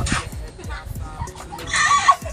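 A rooster crowing, loudest near the end.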